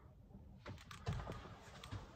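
A few faint, light clicks and taps, scattered irregularly through the second half.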